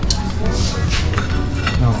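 Ceramic tile pieces clinking and knocking against each other as they are handled and tried in place, a few sharp clinks.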